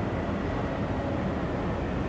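Steady low background rumble with no distinct events: ambient room noise.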